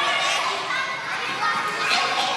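Several children's voices chattering and calling out at once while they play.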